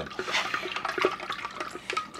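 Honey water sloshing and splashing in a large glass fermenting jar as a long plastic spoon stirs it hard, aerating the mead must so the yeast has oxygen to build up.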